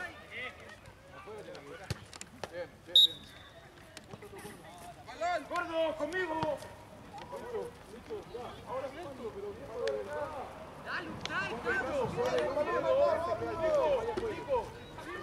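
Indistinct shouting of rugby players and spectators across the field, louder near the end, with one short, sharp referee's whistle pip about three seconds in.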